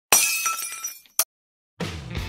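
Shattering-glass sound effect: a sudden crash with high ringing, tinkling pieces that die away within about a second, followed by one short sharp hit. Music starts just before the end.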